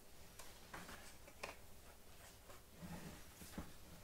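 Near silence with a few faint, short clicks of plastic being handled as a filter's media cartridge is taken apart and its folding cage opened.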